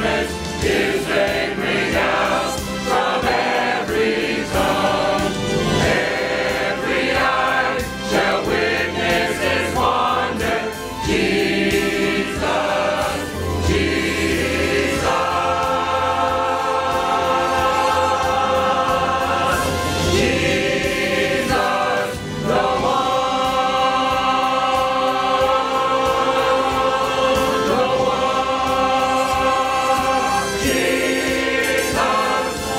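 Church choir of mixed men's and women's voices singing a hymn, with long held notes from about halfway through.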